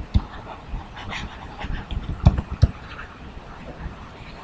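Breathing close to the microphone, with scattered soft taps and knocks from a stylus writing on a tablet screen; two of the knocks are stronger, a little past halfway.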